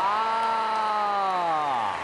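A single long held note, sliding down in pitch as it ends.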